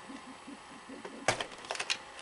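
Clicks of a wire's plug being pulled off a circuit board inside a Sony SL-5000 Betamax VCR: one sharp click a little over a second in, then a quick run of smaller clicks near the end.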